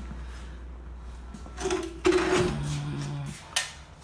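A man's drawn-out hesitant "uh", over a faint low hum that fades out partway through, with a single sharp click near the end.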